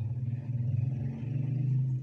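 A low, steady mechanical rumble that grows slightly louder toward the end and then drops away.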